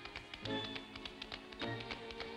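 Tap shoes striking a stage floor in a quick, rhythmic run of taps from two tap dancers, over musical accompaniment.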